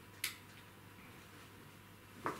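A light switch clicked on once, sharply, about a quarter second in; otherwise faint room tone.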